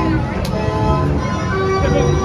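Carousel music, a tune of short held notes, over a dense low rumble of fairground noise; a sharp click about half a second in.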